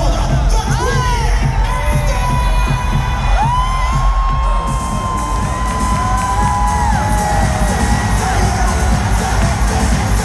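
Concert crowd cheering and screaming over loud pop music with heavy bass. Long high screams rise and fall above the noise.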